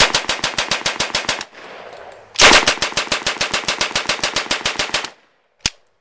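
1944 M3 "grease gun" submachine gun firing .45 ACP on full auto at a fairly low rate of about nine shots a second: a burst of about a second and a half, a short pause, then a longer burst of nearly three seconds. A single sharp crack follows near the end.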